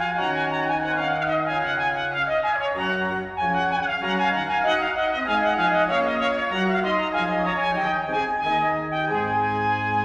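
Baroque trumpet playing a moving melodic line in a 17th-century capriccio over baroque organ and a bass line. The music dips briefly about three seconds in, and near the end a long low bass note is held.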